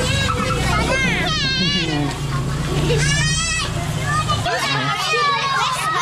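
A crowd of children chattering and shouting, with two high, wavering squeals, about a second in and about three seconds in. A low steady hum underneath cuts off a little past the middle.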